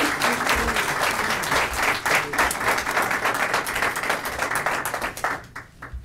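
Applause: dense hand clapping from a group of people, dying away about five seconds in.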